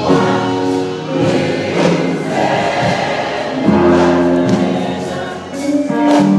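Gospel choir singing together, with long held notes.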